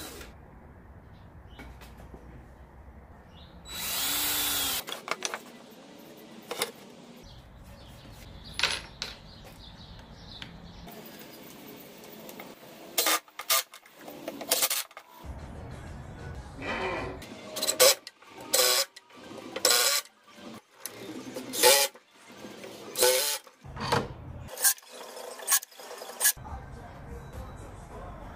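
A power drill runs in one burst of about a second while fastening a post into the wooden cabinet. Later comes a long string of short, sharp clicks and knocks of tools on wood.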